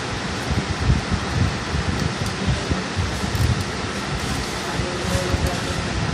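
Steady rushing background noise with an uneven low rumble, of the kind a running room fan makes.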